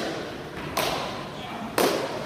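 Athlete's hands and feet on a rubber gym floor while kicking up into a handstand: a brief scuff about a second in, then a single sharp thud near the end.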